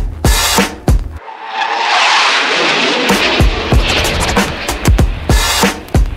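A hip-hop DJ set mixed on two turntables: a drum beat with kick and snare, whose bass drops out for about two seconds under a loud hissing wash before the beat comes back in.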